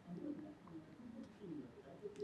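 A faint, low man's voice speaking in short falling phrases, held far down in the mix.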